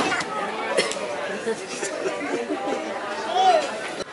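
Indistinct chatter of several overlapping voices in a diner dining room, with a couple of light clicks.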